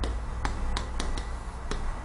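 Chalk writing on a blackboard: a run of about six sharp, irregular taps and clicks as the chalk strikes and drags across the board, over a steady low hum.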